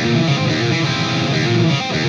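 Jackson electric guitar playing a tense chord whose notes ring out together: a B minor flat-5 with a 9, the open D string sounding against the 6th fret on the E and B strings.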